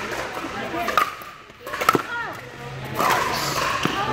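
Pickleball paddles striking a plastic pickleball in a rally: sharp hits roughly a second apart, the loudest about two seconds in, over a hum of voices from the surrounding courts.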